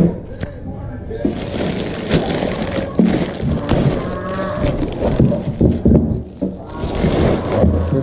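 Plastic bag rustling and crinkling as it is pulled off a fuel cell, loudest in two stretches, early and again near the end, with a few light knocks, over music with a voice in it.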